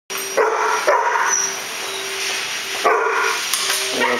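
Dogs playing, one barking sharply three times: twice close together near the start and once more near the end.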